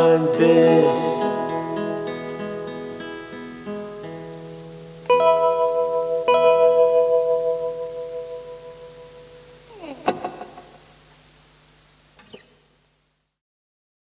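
Closing guitar of a lo-fi song on a four-track cassette recording: a few picked notes, then two strummed chords left to ring and fade. A short scrape comes about ten seconds in, and the recording ends soon after.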